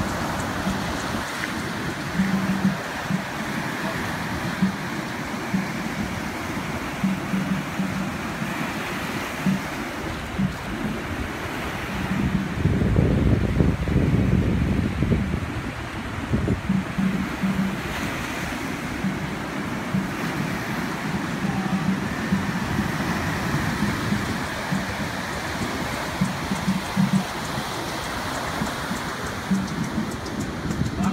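Surf breaking and washing up a sandy beach, with music playing underneath, its short bass notes repeating. A louder low rumble swells for a few seconds about halfway through.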